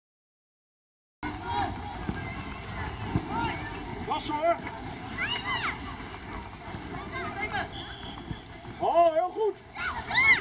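Silent for about the first second, then young football players calling and shouting to each other during play, short high calls over a steady outdoor hiss, louder near the end.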